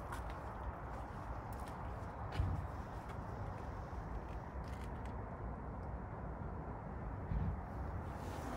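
Steady low outdoor background noise with a few faint soft knocks.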